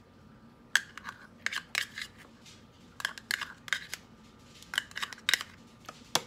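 A utensil scraping and tapping thick sour cream out of a measuring cup into a bowl: about a dozen short, sharp clicks and scrapes at an uneven pace.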